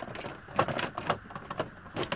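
Plastic toy refrigerator door of a Barbie dollhouse being pushed shut by hand: a few light plastic clicks and knocks, bunched together about half a second to a second in.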